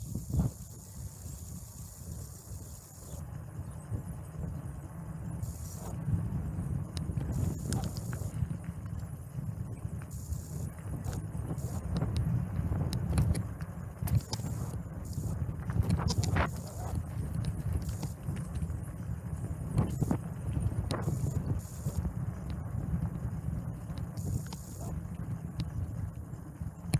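A bicycle riding over asphalt and paving: a steady low rumble with scattered knocks and rattles as it goes over bumps.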